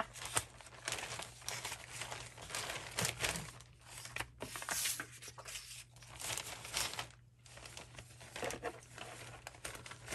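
Paper scraps rustling and crinkling in irregular bursts as they are stuffed into a bag.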